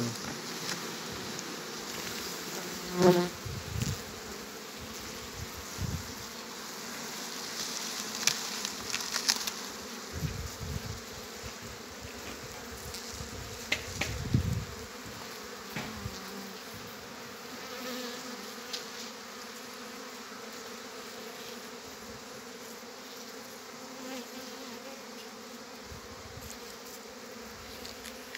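Honeybees buzzing steadily on the frames of an opened wooden hive, with a few brief knocks and rustles as the cloth cover and box are handled.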